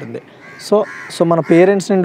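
A crow cawing in the background, two harsh caws about half a second apart during a pause between speech.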